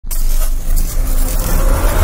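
Cinematic intro sound effect: a loud low rumble with a hiss over it, starting abruptly and building under an animated energy burst.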